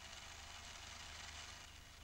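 Faint low engine hum that fades near the end, under steady hiss from an old tape transfer.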